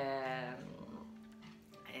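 A woman's drawn-out hesitation sound, a held "ehh" that fades within about half a second into a soft, steady hum.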